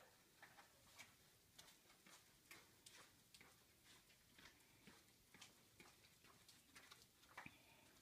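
Faint, irregular ticking, about two ticks a second, of a dog's claws on a concrete floor as it walks and searches along a row of boxes.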